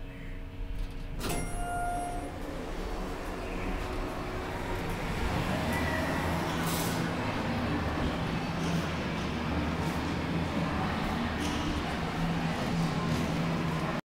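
Schindler hydraulic elevator: a sharp click about a second in, then a short chime-like tone. A steady low hum and rumble with occasional knocks follows and grows slightly louder.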